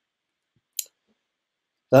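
A single short, sharp click about a second in, in an otherwise quiet pause, just before a man's voice resumes.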